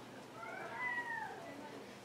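A domestic cat meowing once: a single drawn-out meow that rises and then falls in pitch, fairly faint.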